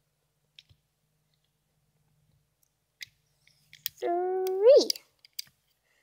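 Faint scattered clicks of rubber bands and the plastic loom being handled while a band is looped onto the pegs. About four seconds in, a girl says one drawn-out counting word, 'three', rising in pitch at its end.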